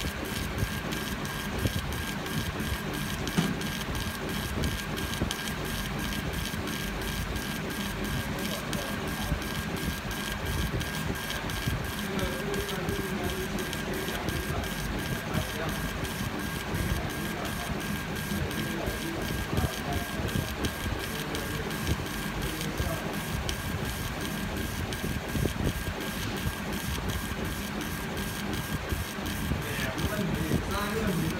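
CO2 laser engraver's gantry head scanning back and forth in raster passes, its motors running in an even rhythm of direction changes several times a second. A steady high tone runs underneath.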